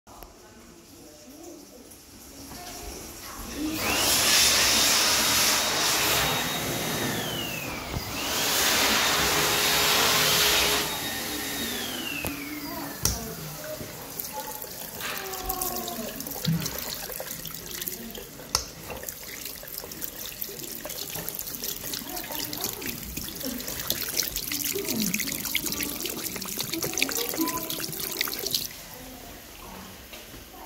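Water from a chrome tap running into a ceramic washbasin, a steady splashing with small clicks and knocks. Early on come two louder rushing sounds, each about three seconds long, that end in a falling tone. Faint voices sound in the background.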